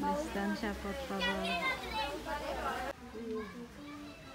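People's voices talking, with no other clear sound; the background drops abruptly and becomes quieter about three seconds in.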